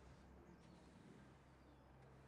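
Near silence: a faint steady low hum, with a few faint high bird chirps about a quarter of the way in and near the end.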